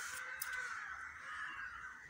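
Faint background bird calls, crow-like, with a brief soft click about half a second in.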